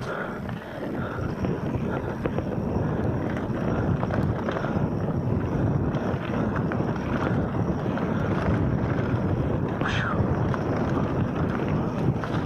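Wind buffeting the bike-mounted camera's microphone together with mountain bike tyres rolling over gravel on a fast descent: a steady, dense rushing noise that builds slightly over the first few seconds.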